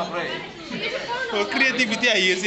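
Several voices talking over one another in the background, with no other sound standing out.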